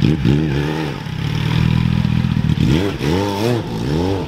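Sport motorcycle engine revved in quick blips. The pitch jumps up and falls back several times near the start and again through the second half, with a steadier run in between.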